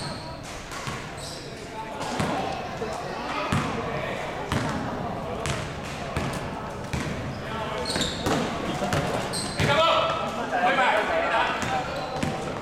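Basketball being dribbled on a hard gym floor, the bounces echoing around a large hall, with players' voices calling out across the court.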